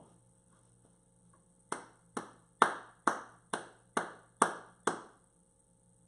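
A man clapping his hands eight times, about two claps a second, starting a little under two seconds in.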